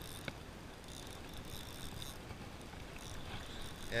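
Spinning fishing reel being wound in on six-pound line with a bream hooked, a steady hiss-like whirr with one sharp click about a third of a second in.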